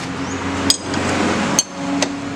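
A steel wrench knocking and scraping on the front wheel axle nut of a Honda automatic scooter: two sharp metallic clinks about a second apart, with a rough scraping between them.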